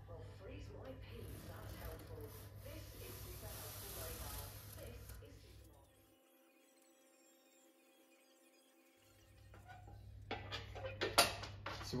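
Faint workshop handling noises over a low steady hum, then a break of near silence of about three seconds, followed by a few sharp clicks and knocks near the end.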